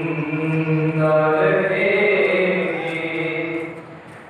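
A young man's solo voice chanting a noha, an Urdu mourning lament, into a microphone, holding long drawn-out notes that slowly fade near the end.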